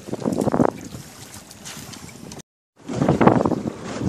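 Wind buffeting the microphone, then the sound cuts out briefly and returns as a small boat running over choppy water, with wind noise and water rushing along the hull.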